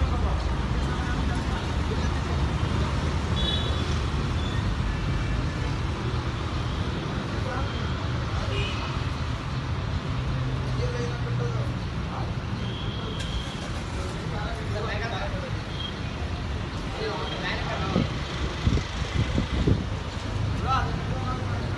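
Steady city road traffic, a low rumble of passing vehicles, with scattered voices in the background and a few louder sounds near the end.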